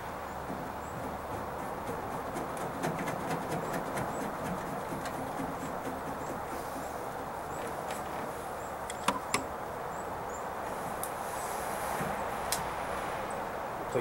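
Steady outdoor background noise with scattered small clicks and taps from hands starting a screw in a pickup's tailgate handle. The loudest is a pair of sharp clicks about nine seconds in.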